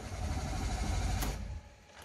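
Renault Logan 1.6 engine being cranked by the starter motor with a steady, even churning, stopping about a second and a half in without the engine catching: a no-start.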